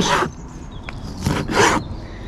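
A chef's knife chopping raw squid on a plastic cutting board: a short scraping cut at the start and a longer scraping cut about a second and a half in.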